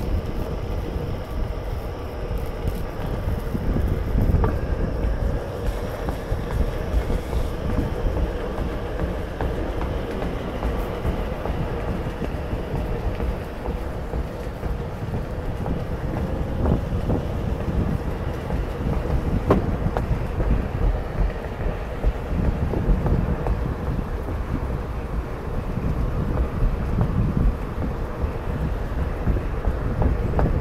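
Onewheel electric board rolling along a paved trail, with heavy wind rumble on the microphone and a faint steady whine underneath.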